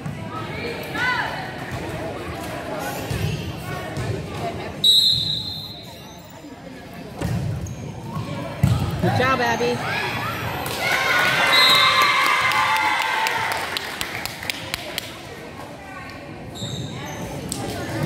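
A volleyball rally in a gym: the ball is struck sharply several times, with players and spectators calling out and cheering between the hits, echoing in the hall.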